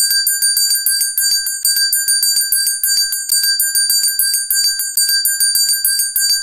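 Bright bell-like ringing that starts suddenly, pulsing in a rapid, even tremolo of about eight strokes a second: an outro jingle for a subscribe end card.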